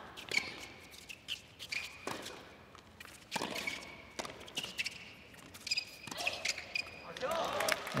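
A tennis rally on an indoor hard court: racket strikes on the ball every second or two, with short squeaks of shoes on the court between them.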